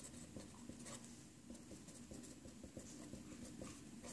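Faint scratching of a pen writing on paper in short, irregular strokes.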